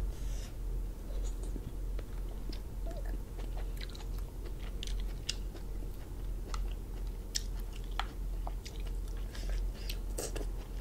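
Close-up eating of cooked lobster: scattered small clicks and cracks as shell and meat are picked at by hand, with chewing, over a steady low hum.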